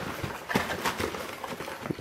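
Cardboard shipping box being opened by hand, its flaps folded back with a string of light, irregular taps and scrapes.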